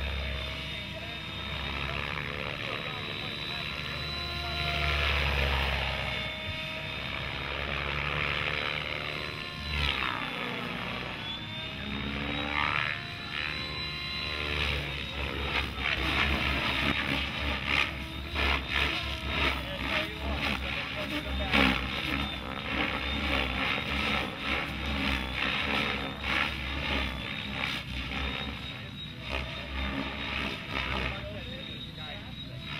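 Electric RC helicopter (Mikado Logo) in flight: a steady high whine from motor and rotor that swings down and back up in pitch around ten to fourteen seconds in as it manoeuvres. Low rumble and buffeting from wind on the microphone, especially in the second half.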